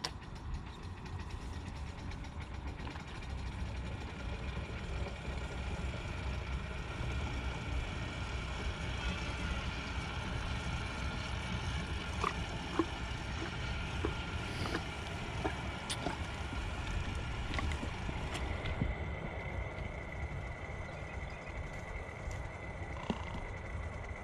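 Horse drinking from an automatic waterer trough: scattered small clicks and water sounds from its muzzle at the water, over a steady low rumble.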